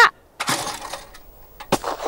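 A single shotgun shot fired at a clay target about half a second in. Its report trails off over the next half second.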